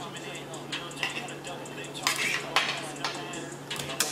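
Boxing broadcast audio playing back quietly: a few sharp clicks and clinks, the strongest about two seconds in, over faint voices and a low steady hum.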